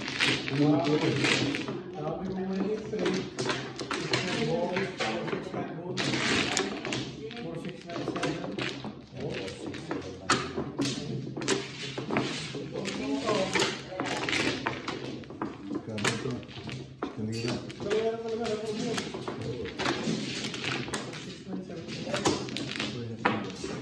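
Mahjong tiles clacking against one another as players shuffle them by hand across a table mat: a dense, irregular run of small clicks and knocks, with people talking over it.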